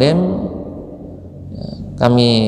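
A man's reading voice ends on a drawn-out note that falls in pitch in the first half-second. A quiet pause follows, with a low rough murmur and a faint short hiss near the end.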